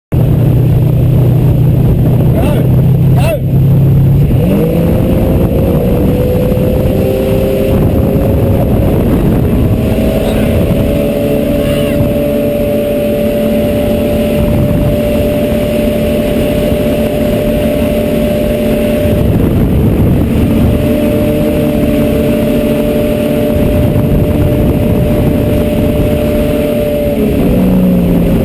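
A motorboat's engine heard from on board, running low at first, then opened up about four seconds in to a steady high-revving drone at full throttle. It is throttled back near the end.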